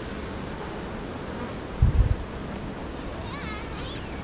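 Honeybees buzzing steadily around an open hive box, with a brief low thump about two seconds in.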